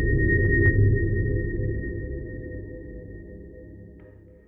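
Electronic logo sting for a video outro: a deep low boom under a steady high ringing tone, both fading away slowly.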